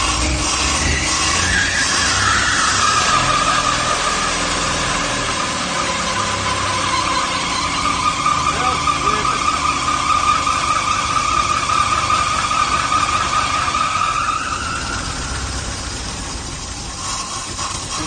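The 1960 International Metro's engine running for the first time in over 30 years, with a steady high-pitched squeal over it that drops in pitch and settles about two seconds in, holds, then dies away with the engine noise near the end. The fuel problem is not yet solved: the carburetor is not spraying fuel.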